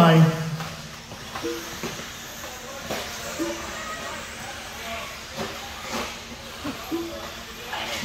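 Radio-controlled off-road race cars running on an indoor dirt track: a steady hiss with short whining blips and a few sharp knocks from landings and impacts.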